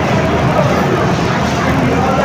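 Steady low rumbling background noise, like a running fan or distant traffic, with faint voices underneath.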